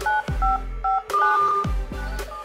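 Smartphone dial-pad touch tones: a quick series of short two-tone beeps as digits are keyed in. Electronic music with a heavy, sweeping bass beat plays underneath.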